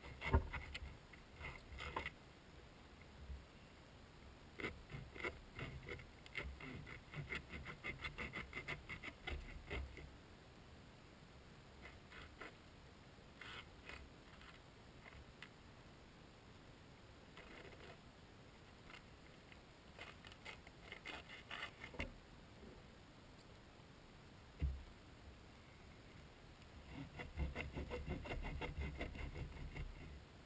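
Hand saw cutting through a skate shoe: runs of quick back-and-forth scraping strokes in bursts, with short pauses between them and a denser run near the end.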